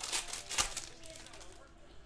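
Foil wrapper of a trading-card pack being torn open and crinkled by hand, a dense crackle in the first second that then fades to quieter rustling.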